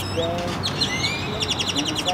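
Songbirds calling: high sliding whistles near the start, then a fast chattering trill of rapidly repeated notes from about one and a half seconds in.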